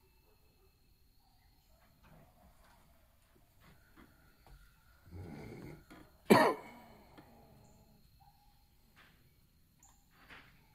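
A rough, breathy noise about five seconds in, then a single sudden loud cough-like blast of breath right at the microphone, fading within half a second.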